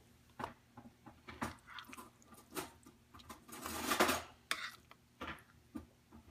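Serving spoon scooping green bean casserole out of a glass baking dish into a plastic bowl: scattered clinks and taps, with a longer scrape about four seconds in that is the loudest sound.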